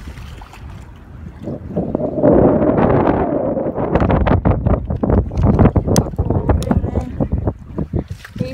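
Wind buffeting a phone's microphone, mixed with handling rustle and irregular knocks. It becomes loud about two seconds in.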